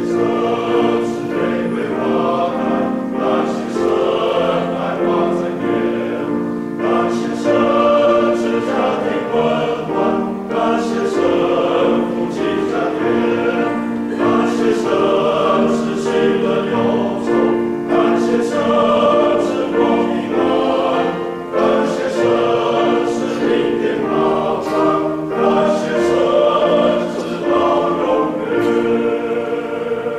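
Men's choir singing a hymn in harmony, holding chords that change every second or so.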